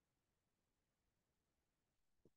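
Near silence: the recording is almost completely quiet, with only a very faint hiss.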